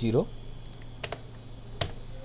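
Computer keyboard keystrokes: two quick taps about a second in, then a single louder key press near the end.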